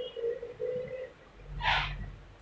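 Duster rubbing across a whiteboard: three short squeaks in the first second, then a louder brushing swish of a wiping stroke near the end.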